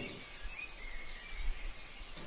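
Faint, scattered bird chirps over a low, steady background hiss.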